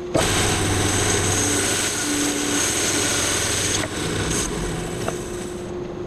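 Grizzly G0513 17-inch bandsaw cutting a small mesquite log held on a sled: a loud, steady cutting noise that stops near the end as the blade comes through, leaving the saw running more quietly.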